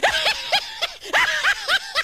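High-pitched laughter in quick short bursts, about six a second, in two runs with a brief break about a second in.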